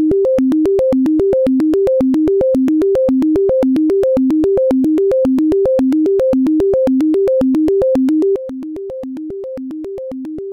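Live-coded synthesizer (TidalCycles driving SuperCollider) playing a fast, endlessly repeating rising four-note minor arpeggio that climbs to the octave, each note starting with a sharp click. About eight seconds in the volume drops suddenly as the pattern's amplitude is turned down.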